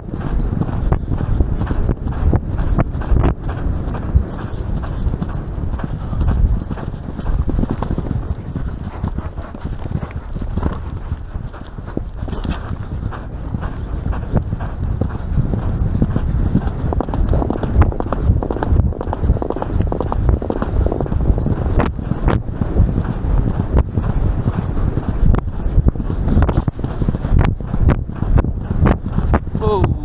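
Horse galloping on turf, its hoofbeats in a fast, steady rhythm, heard from the saddle with heavy wind noise on the microphone.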